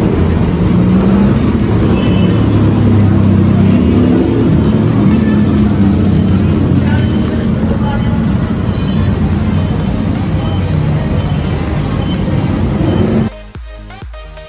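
Loud, busy background noise with indistinct voices and music mixed in. About 13 seconds in it cuts off suddenly and gives way to upbeat electronic background music.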